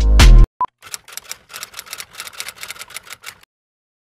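Loud music with a heavy beat cuts off about half a second in, followed by a brief beep. Then comes a run of faint, irregular typewriter-like key clicks lasting about two and a half seconds, a sound effect of text being typed out.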